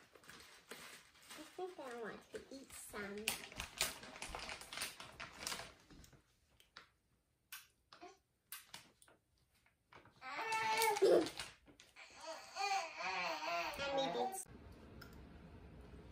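Crinkling of a plastic bag as coconut flakes are poured from it into a small metal measuring cup, a run of crackly rustles. Later a young child's voice, the loudest sound, rises and falls in pitch for a few seconds, followed by a low steady hum.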